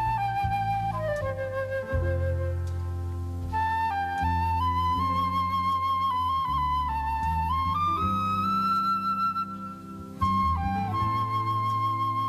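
Solo concert flute playing a slow melody of long held notes with vibrato, over soft sustained low chords from the band.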